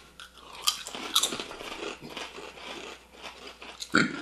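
Crisp tomato-and-paprika potato chips being bitten and chewed by two people: irregular crunching with a few sharper cracks.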